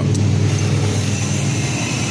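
A motor running steadily: a loud, even low drone with a faint high whine above it.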